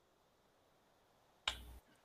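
Near silence, then about a second and a half in a single sharp click with a brief burst of hiss and low hum, typical of a video-call microphone being switched on.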